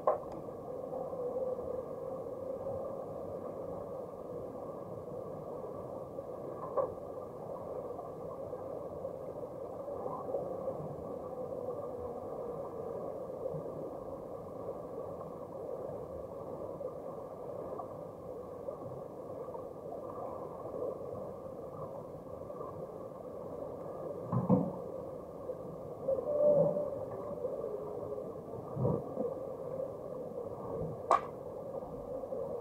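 Muffled underwater pool noise heard through a submerged camera's housing: a steady wash with a faint hum. A few dull knocks come through, two louder ones near the end.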